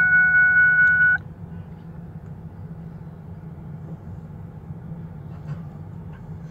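A loud, steady electronic beep tone with a slight pulse cuts off suddenly about a second in, leaving a low, steady vehicle hum.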